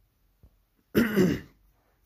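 A man clears his throat once, briefly, about a second in.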